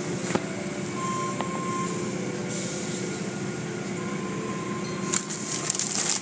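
Automatic tunnel car wash heard from inside the car: steady machinery hum and rumble with water spraying over the car body. A louder hiss sets in about five seconds in, as the wash comes up to the hanging cloth strips.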